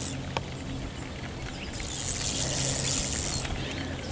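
Spinning fishing reel whirring while a hooked fish is fought on a bent rod: briefly at the start, then again for nearly two seconds in the middle, over a steady low hum.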